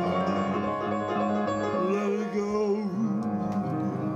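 Piano music playing, with sustained chords and a melody line that rises and falls in the middle.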